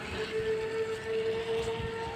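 A horn sounding one long, steady note over faint outdoor background noise.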